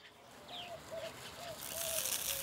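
A bird calling in a quick series of short, low, clucking notes, with one brief high falling chirp about half a second in. A faint high hiss comes up near the end.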